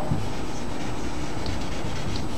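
Steady background noise: a constant hiss and low rumble from the room and the recording, unchanging and with no distinct events.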